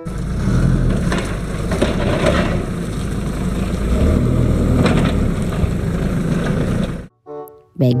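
A forklift's engine running as the truck drives, a steady low rumble with noise over it that cuts off suddenly about seven seconds in.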